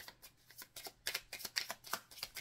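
A deck of oracle cards being shuffled overhand from hand to hand: a quick, irregular run of soft card slaps, coming faster in the second second.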